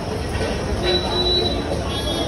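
A train's low rumble, with a thin, high, steady wheel squeal starting about a second in and lasting under a second.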